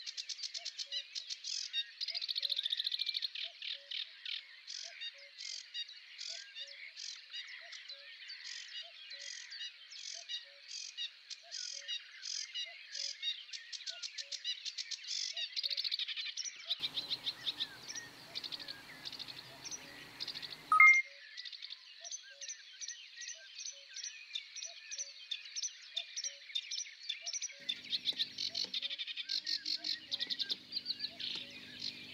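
Dense, continuous chirping like birds and insects in a nature ambience. A faint low tick repeats regularly under it. A rougher, noisier stretch in the middle ends with one loud chirp.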